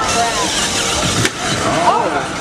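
Electric motors of FTC competition robots whining and sliding in pitch as the robots lower from the lander and drive off, with a sharp knock a little over a second in.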